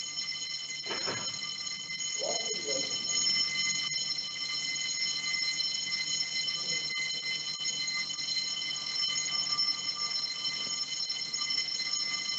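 A steady, unbroken high-pitched electronic tone, like an alarm or buzzer, sounding for the whole stretch and cutting off just before the talk resumes. Faint voice sounds are heard in the background during the first few seconds.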